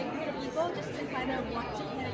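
Only speech: a young woman talking, with background chatter of people in a large hall. A low, steady hum comes in a little past halfway.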